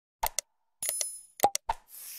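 Sound effects of an animated like-and-subscribe button: short sharp mouse-click sounds, a brief high bell ring about a second in, more clicks, and a whoosh near the end.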